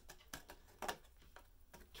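A few faint ticks and light rustles of oracle cards being handled as one is drawn from the deck.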